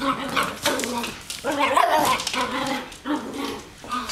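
Small dogs giving a run of about six short yips and barks, one longer call near the middle.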